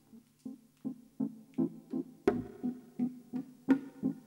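Electric-piano sound from a Nord Electro 3 stage keyboard, playing repeated chords in an even pulse of about three a second as the instrumental opening of a slow jazz song. A couple of the strikes land sharper and brighter than the rest.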